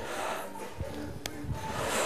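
Forceful exhaled breaths from people doing two-handed kettlebell swings, one near the start and another near the end, with soft thuds and faint background music underneath.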